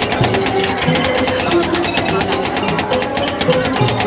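Metal spatulas chopping and tapping rapidly on a steel cold pan, breaking up the ice-cream mix for rolled ice cream: a fast, even run of clicks.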